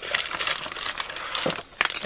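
Clear plastic bags of Lego pieces crinkling as they are picked up and handled, a dense rustle with a short break about a second and a half in.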